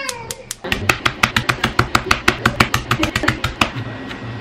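Chef's knife chopping garlic on a bamboo cutting board: a fast, even run of knocks, about six or seven a second, starting about half a second in.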